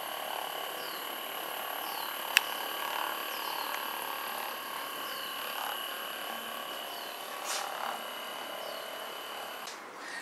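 Hypervolt percussion massager running with a steady electric motor hum while it is pressed into a thigh muscle. A single sharp click sounds about two and a half seconds in.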